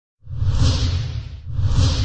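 Two whoosh sound effects with a low rumble underneath, like a logo-animation intro. The first swells about a quarter second in and fades, and the second starts about a second and a half in.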